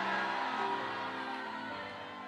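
Soft background music of sustained held chords, the notes changing a couple of times and the level slowly fading.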